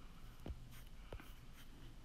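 Quiet room tone with two soft, low knocks, about half a second and a second in.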